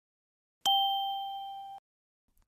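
A single bell-like chime sound effect, marking the change to the next section. It sounds once about half a second in, with a clear steady pitch, fades for about a second and then stops abruptly.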